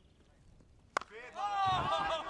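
A cricket bat strikes the ball once, a single sharp crack about a second in.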